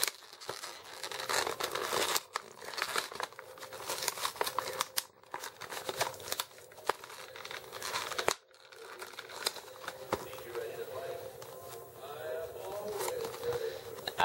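A carded plastic blister pack for an action figure being crinkled and torn open by hand: a dense run of crackles and rips, busiest in the first half and thinning out after about eight seconds.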